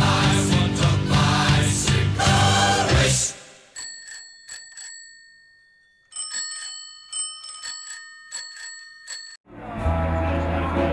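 Rock music with guitar stops about a third of the way in. Bicycle bells then ring in quick strikes: four or five rings, a pause while the last one fades, then a faster run of rings from bells of different pitches. Fuller sound returns just before the end.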